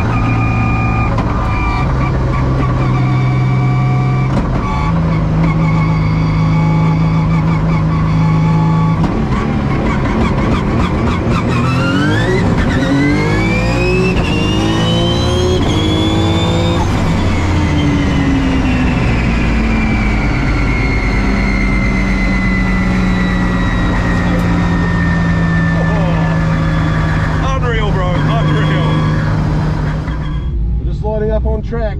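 Race car engine heard from inside the cabin on track, holding steady revs that step up a couple of times. About halfway through, a high-pitched whine climbs sharply, then falls away slowly over the next ten seconds before the engine settles back to a steady drone.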